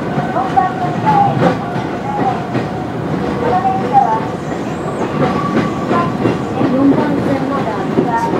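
Kobe Electric Railway 1100 series electric train heard from the cab, running over switches into a station, its wheels clicking irregularly over the points and rail joints above a steady running rumble.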